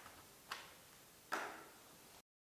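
Two faint, short knocks a little under a second apart, the second one louder with a brief ringing tail.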